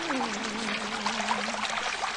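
Performance soundtrack of rushing, pouring water, with one low accompanying note that bends near the start and then holds steady.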